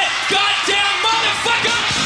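Live punk rock band playing, with short yelled vocal phrases repeating about three times a second over the band.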